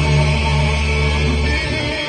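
Live rock band playing an instrumental on electric guitars, with heavy held low notes that drop away near the end.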